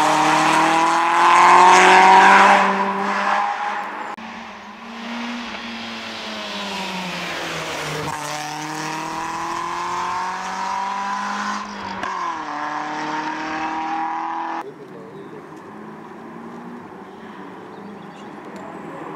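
A Peugeot 106 rally car's engine accelerating hard: the revs climb, fall back at each upshift and climb again. The upshifts come about 8 and 12 seconds in. The sound is loudest at first, and a few seconds before the end it drops abruptly to a faint background.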